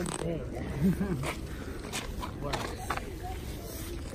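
Faint, indistinct voices talking, mostly in the first second or so, with a few short clicks and the rustle of a nylon track jacket brushing against the handheld phone.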